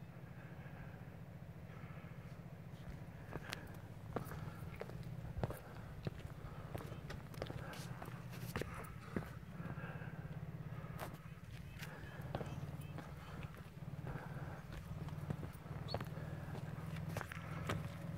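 Pickup truck's engine running at a low, steady crawl in four-wheel-drive low as it creeps over granite slab, with scattered sharp clicks and knocks.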